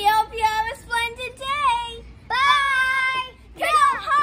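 Children's voices singing in a sing-song way, with one long held note about halfway through.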